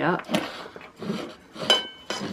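Cutlery clinking against a dinner plate, with one sharp, ringing clink near the end.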